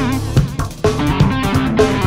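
Rock band music: electric guitar over bass and drums, with a short drop-out a little past halfway before the band comes back in on a hit.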